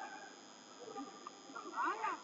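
Faint voices of the boxing arena, then a short, high-pitched shout that rises in pitch near the end.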